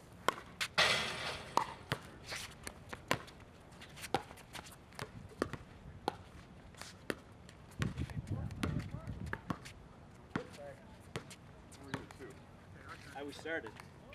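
A pickleball rally: a long run of sharp, irregular pops from paddles striking the plastic ball and the ball bouncing on the hard court. There is a short loud burst of noise about a second in, and a voice near the end.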